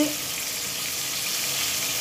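Egg-dipped, floured fish fillets sizzling steadily as they shallow-fry in hot oil in a frying pan.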